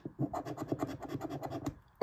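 Scratch-off lottery ticket being scratched: a quick run of short rasping strokes, about a dozen a second, that stops shortly before the end.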